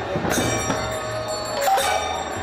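Aarti devotional music: bells ringing steadily with khol drums beating beneath, a sharp bell strike about a third of a second in and another near the end, and a long held note coming in near the end.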